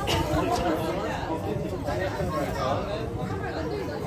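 Several people's voices chatting, no single clear speaker, over a steady low rumble.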